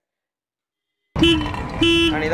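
Royal Enfield Himalayan BS6 motorcycle horn giving two short beeps about half a second apart, starting about a second in, each a steady flat tone.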